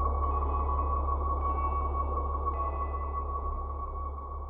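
Ambient electronic drone: a steady high tone held over a low hum, with faint higher notes shifting a few times. It slowly fades.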